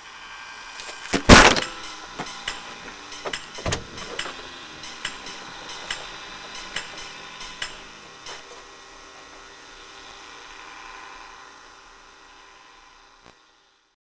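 A steady hum of several held tones with a string of sharp knocks over it. The loudest knock comes about a second in and another strong one near four seconds; the smaller knocks thin out after about eight seconds, and the hum fades away near the end.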